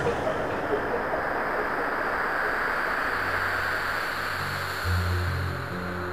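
Opening of an electronic dance track: a swelling wash of filtered white noise that slowly fades away, then deep sustained synth bass notes come in about three seconds in and step from one pitch to another.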